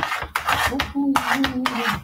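A cooking utensil scraping around the inside of a pot in quick repeated strokes as pasta is stirred. A man's voice holds a sung note over the second half.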